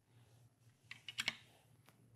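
A few faint, quick plastic clicks and taps close together about a second in, with one more near the end: a cuvette being capped and set into a benchtop turbidity sensor.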